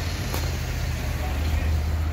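Steady low rumble of road traffic or a vehicle engine in a city street, with a single sharp click about a third of a second in.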